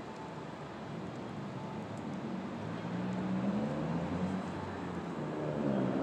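A motor vehicle's engine running close by, growing gradually louder over the few seconds.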